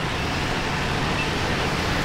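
Steady city traffic noise, with motorbikes running on the street alongside.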